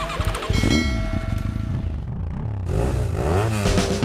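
An engine revving, its pitch rising and falling several times, over electronic music.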